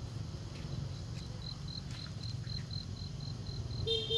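An insect chirping in a steady high-pitched pulse, about five chirps a second, starting about a second in, over a low steady rumble of background noise. A short pitched sound comes right at the end.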